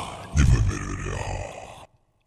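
Logo sting sound effect: a deep, heavily processed synthetic hit that strikes again about half a second in, then cuts off suddenly near the end.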